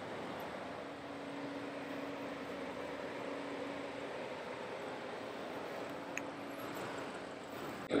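Steady, faint outdoor background noise with a faint low hum, and one small click about three-quarters of the way through.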